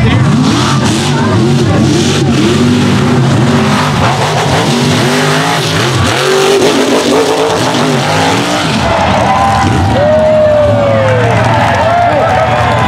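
Mega mud truck engines revving hard at full throttle while racing through the mud pits, their pitch climbing and dropping over and over.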